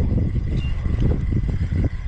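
Wind buffeting the camera microphone: a steady low rumble that rises and falls in irregular gusts.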